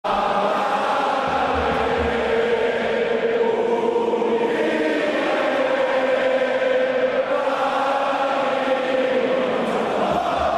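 Massed voices chanting in unison on long held notes, with a few low thuds between one and two seconds in.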